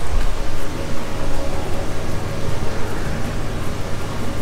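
Steady background hiss and low hum of an indoor hall's ambience, with no distinct events.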